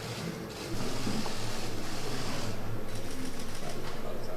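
Many hands thumping on wooden desks in a legislative chamber, a fast, even clatter that sets in suddenly about a second in and holds steady: the customary desk-thumping welcome in an Indian assembly.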